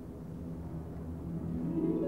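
Orchestra playing low, quiet sustained notes over a deep rumble, with higher instruments entering near the end and the music growing louder.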